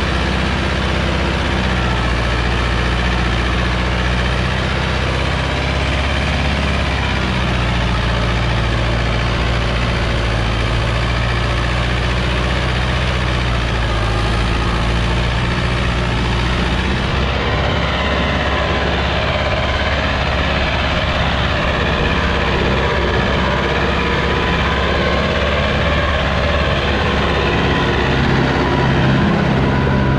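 Farmtrac 6060 tractor's three-cylinder diesel engine running steadily under load as it pulls a disc harrow through soil. The sound shifts abruptly about seventeen seconds in.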